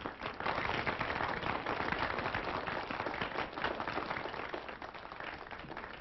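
A crowd clapping and applauding. The dense patter of claps thins and fades over the last couple of seconds.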